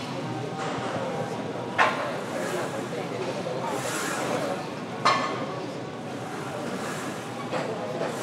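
Busy gym background noise with indistinct voices, broken by two sharp clanks, about two seconds and five seconds in.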